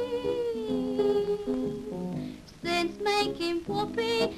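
A woman singing in a wavery vintage popular style with grand piano accompaniment. She holds a long note with vibrato, then the piano carries a short passage alone, and near the end she starts singing the next line.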